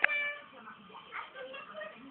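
A sharp click, then a domestic cat gives one short meow.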